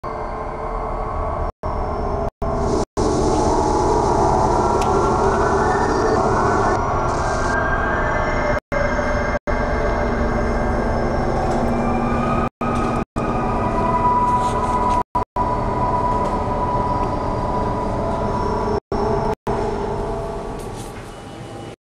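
Loud, continuous mechanical rumble with sustained whining tones running through it, broken by about eleven sudden, brief silent dropouts.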